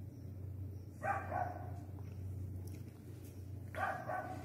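Faint steady low hum, with two short, faint voice-like calls: one about a second in and one near the end.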